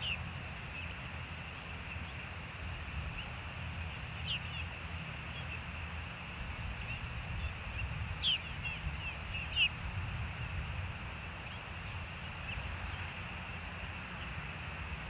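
Short, high, downward-sliding chirps from an osprey, in a few brief clusters: one near the start, one about four seconds in, and the loudest two a little past the middle. Under them runs a steady low rumble.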